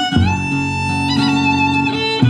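Live acoustic trio playing an instrumental passage: fiddle bowing long held notes over acoustic guitar and upright bass.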